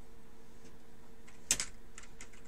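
Faint steady hum, then a sharp click about one and a half seconds in, followed at once by a softer one and a faint one near the end.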